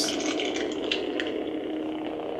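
Lightsaber sound board playing its steady electric hum through the hilt's small speaker, a rough, crackly buzz over one low held tone, while the Neopixel blade cycles colour. Two faint ticks near the middle.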